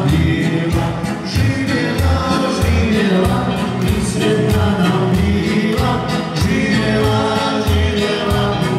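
Live dance music from a small band, keyboard and accordion, with singing over a steady beat.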